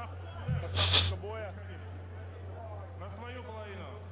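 Faint, indistinct voices over a steady low electrical hum, with a short hiss about a second in.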